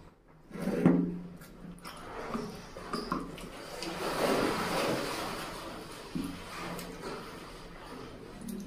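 Close-miked eating sounds: chewing and mouth noises, then fingers tearing apart a fried fish head, with a crackling rustle about four to five seconds in.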